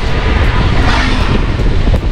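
Steady wind and road noise in a moving car, with a low rumble of wind buffeting the microphone.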